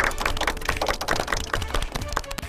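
Several people clapping their hands quickly, a dense, uneven run of claps.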